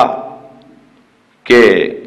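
A man speaking over a public-address system in an echoing hall. His last word rings away in the echo for about a second, there is a brief pause, and then he holds a long drawn-out syllable "ke" from about a second and a half in.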